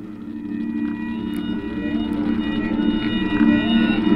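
Ambient drone music of held low and high tones swelling up in loudness, with a faint wavering, gliding line above it.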